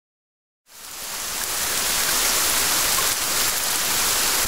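Dead silence, then a loud, steady hiss of rushing noise, like static or pouring water, fades in under a second in and holds evenly.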